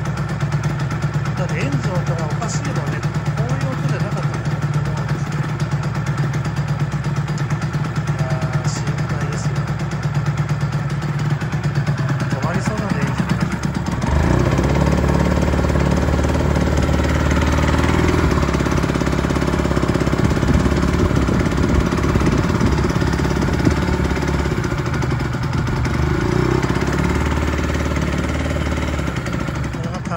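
Honda NSR250R SP's two-stroke V-twin running at the kerb, getting louder about halfway through and staying so. The revs won't rise properly, a fault the owner reports for this start-up.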